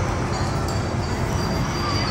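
Sol Spin spinning thrill ride in motion: a dense, steady rumble of the ride running, mixed with general amusement park noise.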